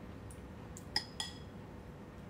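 Eating utensils clinking twice against a ceramic bowl about a second in, the strikes a fifth of a second apart with a brief ringing after each.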